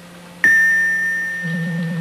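A single bell-like chime sounds about half a second in, one clear high tone that rings on and slowly fades. A low pulsing hum comes in near the end.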